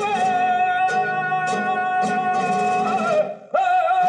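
Male flamenco singer (cantaor) holding a long, wavering sung note in a caña, over flamenco guitar with a few sharp strums. The voice breaks off briefly near the end, then comes back in on a new phrase.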